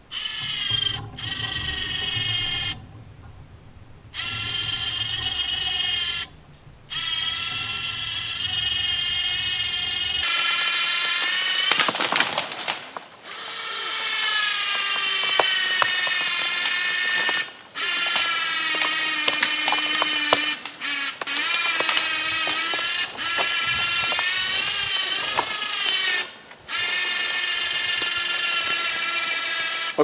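Battery-powered electric winch motor whining under load as it drags a hung-up tree down, run in several stretches with abrupt stops, its pitch wavering as the load changes. About twelve seconds in there is a burst of crackling and snapping as branches break.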